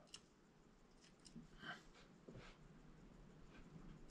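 Near silence: room tone with a few faint, brief taps and rustles from hands handling a clay piece and sculpting tools on a wooden workbench.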